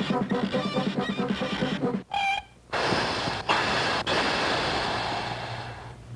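Cartoon soundtrack of a train being braked: rhythmic music for the first two seconds, a short high note, then a long hiss of the brakes that fades away near the end.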